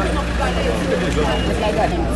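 Background voices of several people talking outdoors, over a steady low hum.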